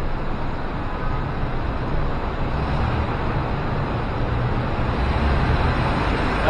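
Steady outdoor background noise, a rushing hiss over a low rumble that grows a little stronger in the second half.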